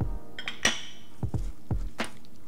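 A ringing clink against a stainless steel mixing bowl about two thirds of a second in, with a few softer knocks, over background music.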